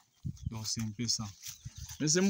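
A man's low voice talking in short, choppy syllables, starting a moment in.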